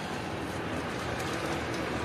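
Steady outdoor background noise, a low rumble and hiss, with a few faint light rustles.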